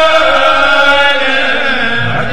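A man's voice chanting a khassida, Mouride devotional poetry, in long held notes that bend slowly in pitch.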